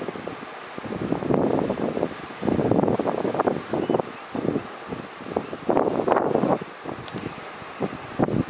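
Northern elephant seal pups making throaty, pulsed calls in several separate bursts of up to about a second each, over a steady hiss of wind on the microphone.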